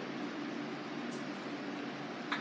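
Steady, even background hiss of room tone, with no distinct event.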